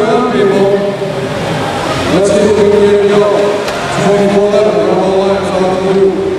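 Crowd of spectators chanting in about three long, drawn-out calls, each held for a second or more with a rise in pitch at its start.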